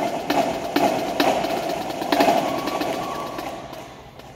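Winter percussion ensemble playing rapid drumming with several louder accented strikes in the first couple of seconds. It dies away near the end.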